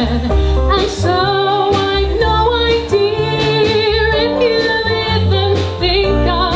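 Live jazz-funk band: a woman's lead vocal sings long, wavering held notes over bass, drum kit and keyboard, with steady drum strikes.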